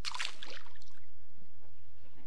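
A walleye tossed back into the river splashing into the water: one sudden splash right at the start, trailing off over about a second.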